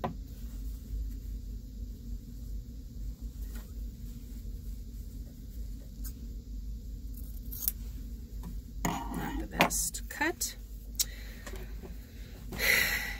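Scissors snipping through quilt binding fabric and the cloth being handled: a sharp click at first, a few faint snips over the next several seconds, then a cluster of louder rustles and clicks near the end, over a steady low hum.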